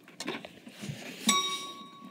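A bell-like ding a little past halfway, its ringing tone held to the end.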